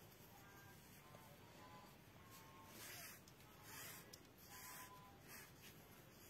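Near silence with faint, soft rustles of ribbon and cardstock being handled as a ribbon is threaded through the slats of a paper fan, three small swells in the second half.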